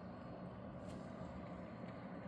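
Steady rain and breezy wind, a faint even outdoor hiss and rumble, with one light tick about a second in.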